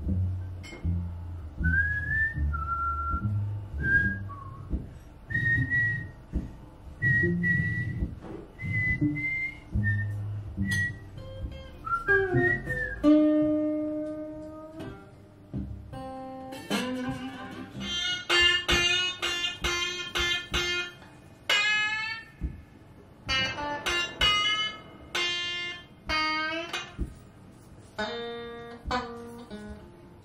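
A man whistling a bluesy melody over a plucked guitar bass line. About thirteen seconds in the whistling stops and the guitar plays on alone, some of its notes gliding up in pitch.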